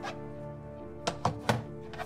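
Three quick hollow thunks a little over a second in, the last the loudest: a banana and hands knocking against the inside of a plastic UV sterilizer box as the banana is lifted out. Background music plays under it.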